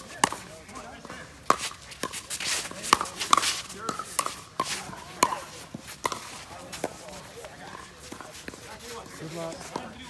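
Pickleball rally: sharp hollow pocks of paddles striking a plastic pickleball, a quick run of hits roughly every half second to second that thins out about seven seconds in.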